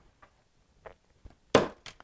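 A few faint light taps, then about one and a half seconds in a short scraping knock as a pillar candle is tipped onto its side in a foil baking pan scattered with a spice mixture.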